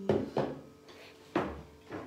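Ceramic bowls being set down on a wooden table: three knocks, two close together at the start and a third a little over a second later.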